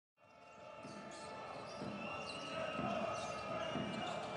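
Basketball being dribbled on a hardwood court, a bounce roughly every half second, over a steady background hum; the sound fades in at the start.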